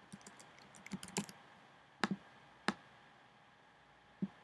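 Typing on a computer keyboard: scattered light keystrokes with a quick run about a second in, then two louder single clicks about two seconds in and just over half a second later.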